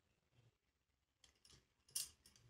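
Near silence, with a few faint clicks and one brief, sharp clink near the end: a metal spoon touching the glass bowl of chilla batter as mixing begins.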